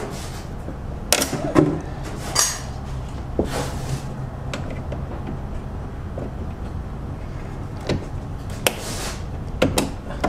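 Pliers clicking and knocking against a spring-type radiator hose clamp as it is worked loose, in irregular sharp metal clicks a second or more apart, over a steady low hum.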